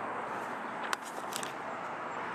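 Steady street ambience, the hum of distant road traffic, with a single sharp click about a second in.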